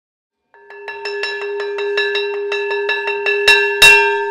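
A hanging metal bell rung rapidly by its clapper, about five or six strikes a second, building into one continuous ringing tone. Two louder, sharp knocks come near the end, the second the loudest.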